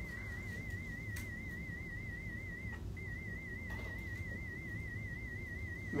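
A 2,000 Hz pure test tone from an online hearing test, wavering slightly in pitch, with a brief gap about three seconds in.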